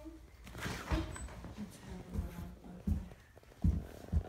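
Several dull thumps and knocks at uneven spacing, about one a second, under faint children's voices.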